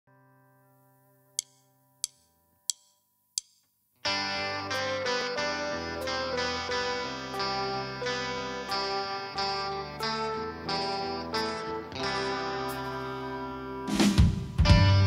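Four sharp, evenly spaced clicks about two-thirds of a second apart count the song in. From about four seconds in, a Fender electric guitar plays an intro of picked notes that ring over one another.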